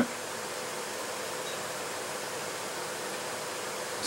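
Steady background hiss with a faint, even hum; no distinct sound from the micrometer.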